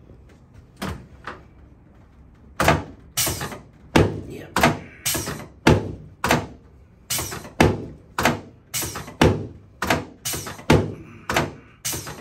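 A quick series of sharp thunks from a chiropractic adjusting table as the chiropractor's hand thrusts drive into the patient's sacrum and lumbar spine. A couple come about a second in, then they follow roughly twice a second to the end.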